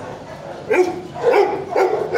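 Shelter dogs barking in their kennels: a short lull, then three barks in quick succession in the second half.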